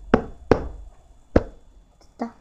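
A flat hand slapping a carpeted floor close to the microphone: three sharp slaps, the first two close together and the third about a second later.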